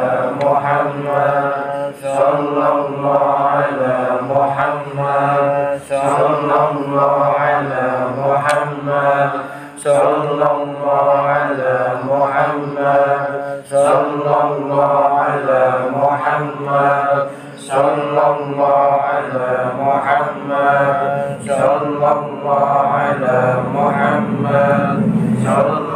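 A group of men chanting dhikr in unison, one phrase repeated over and over with a brief break about every four seconds.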